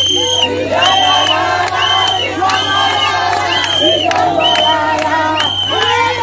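A crowd singing and cheering, with a shrill, high-pitched call repeated about once a second over the voices.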